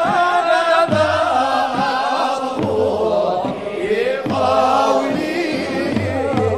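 Sufi devotional chant (madih and samaa) sung by a vocal ensemble, the melody rising and falling in long sung lines.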